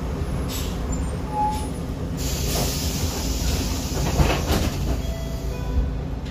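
Jelcz 120M/3 city bus's diesel engine running at low revs, heard from inside the bus as it creeps up behind another bus. About two seconds in, a burst of compressed-air hiss starts and fades over a few seconds.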